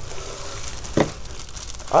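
Shredded crinkle-paper filler and a plastic bag rustling and crinkling as a hand rummages through a subscription box, with one brief, sharper sound about a second in.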